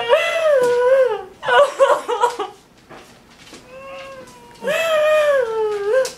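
A woman crying hard: two long, high wailing sobs, one at the start and one near the end, with gasping, broken sobs between them.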